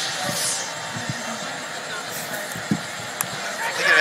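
Steady background ambience of a cricket TV broadcast, an even hiss-like noise with faint distant voices and a couple of short sharp knocks late on.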